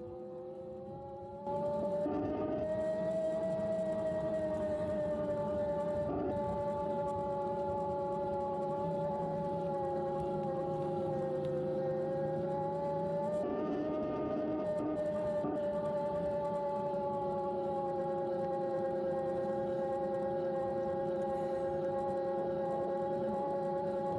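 CYC Photon mid-drive e-bike motor running under power at around 1,500–1,700 rpm: a steady whine with several overtones that drifts gently up and down in pitch. It gets louder about a second and a half in.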